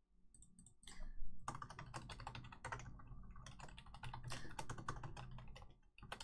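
Typing on a computer keyboard: a few scattered key clicks, then a quick, steady run of keystrokes from about a second in until just before the end.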